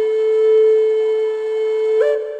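Flute music: a single long note held steadily.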